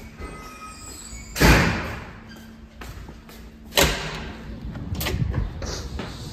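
Two heavy lobby doors of metal and glass banging shut, one about a second and a half in and one just before four seconds. Each is a loud thud with a short echo off the hard hallway walls.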